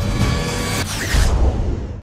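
Channel intro music with a whoosh sweep and a deep hit about a second in as the logo lands, then it cuts off abruptly.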